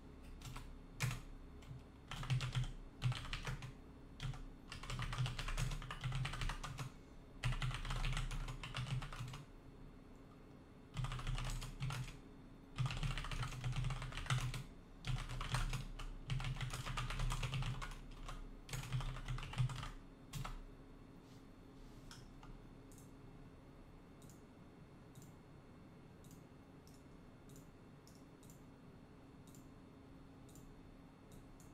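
Typing on a computer keyboard in quick bursts of keystrokes with short pauses between them for about twenty seconds, then stopping, leaving only a few faint scattered clicks.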